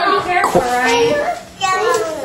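A toddler's high, sing-song voice, without clear words, with a short break about a second and a half in.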